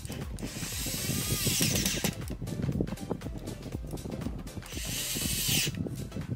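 Corded electric drill driving screws into an acrylic sheet, run in two bursts: the first about two seconds long near the start, the second about a second long near the end.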